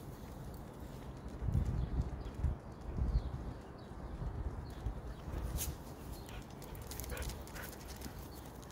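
Walking footsteps and a husky's paws on a concrete footpath, with bursts of low rumble on the microphone in the first half and a few sharp clicks in the second half.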